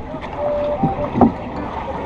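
Steady rushing noise of a small outrigger boat on the sea, with faint voices in the background.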